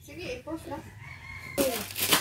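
A taped cardboard box being torn open, with a sudden loud rip of tape and cardboard in the last half second. Before it, a drawn-out pitched call, ending on a held high note, sounds in the background.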